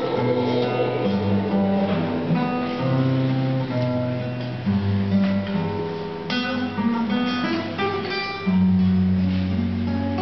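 Acoustic guitar playing a tango instrumental passage: a plucked melody over low bass notes, with a fuller chord struck about six seconds in.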